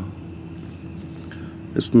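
Steady, high-pitched insect chorus, one even unbroken whine, with a man's voice beginning near the end.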